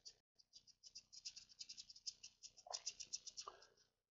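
Faint, quick run of light, sharp clicks, several a second, stopping about three and a half seconds in.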